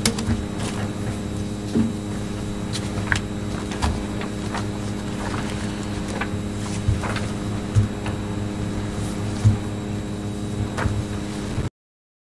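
Steady low hum of room equipment, with scattered small knocks and paper rustles from people handling papers and writing at a table. The audio cuts out completely for a moment near the end.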